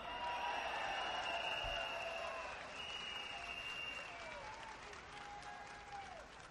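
Crowd applauding, the clapping slowly dying away over several seconds.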